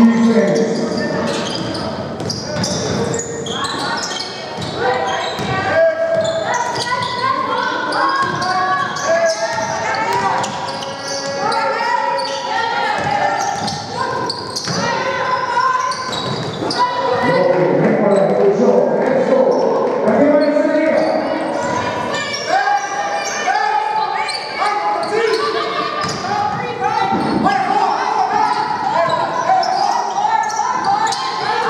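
A basketball being dribbled and bouncing on a hardwood court during play, with voices calling out, all echoing in a large, near-empty sports hall.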